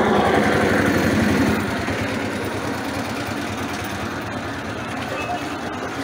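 Small engine running steadily with a rapid, even putter, under indistinct crowd voices from people walking in a street procession. It eases down a little over the first two seconds, then holds steady.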